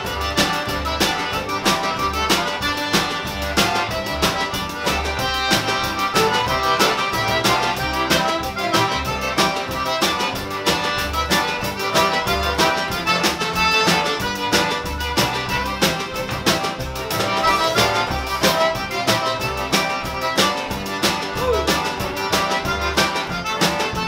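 Cajun band playing: button accordion and fiddle leading over acoustic guitar, upright bass and drum kit, with a steady beat.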